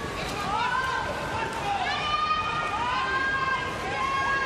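Crowd of spectators in a swimming arena chanting, several voices holding long notes that overlap and glide gently in pitch over a steady crowd noise.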